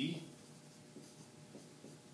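Dry-erase marker writing on a whiteboard: a few short, faint strokes.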